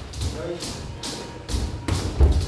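Boxing sparring: low thuds of gloved punches and footwork on the ring canvas, with two sharp slaps in the second half.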